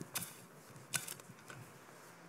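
A few faint, short scrapes and taps of a shovel digging into a pile of dirt, unevenly spaced, the strongest about a second in.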